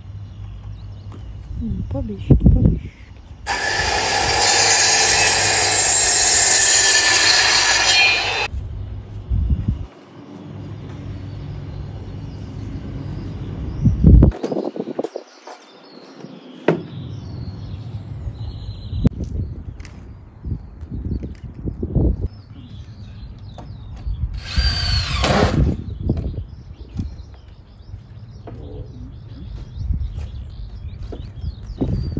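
Power tool running loudly for about five seconds a few seconds in, then a cordless drill whirring briefly about 25 seconds in, as screws are driven into wooden deck boards; scattered knocks and handling of the boards in between.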